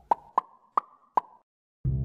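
Four short, pitched pop sound effects in quick succession, marking animated icons vanishing from a map graphic. After a brief silence, music with a plucked bass line starts near the end.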